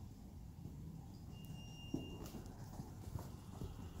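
Horse's hoofbeats on sand arena footing, faint, irregular thuds as it moves around the lunge circle, with a sharp click just before two seconds in.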